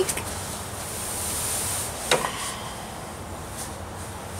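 Hammock fabric rustling as a person shifts and lies back in it, with one brief sharp sound about two seconds in.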